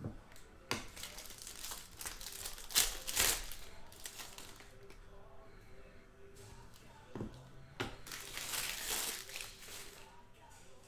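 Thick 2016 Panini Black Gold football cards being handled and flipped through by hand, rustling in a few short bursts, the loudest about three seconds in and a longer one near the end.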